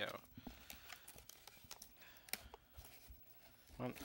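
Faint rustling and scattered small clicks of packaging being handled as headphones are worked free of their box.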